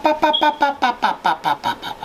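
A man's voice in a rapid run of short repeated syllables, about eight a second, fading near the end.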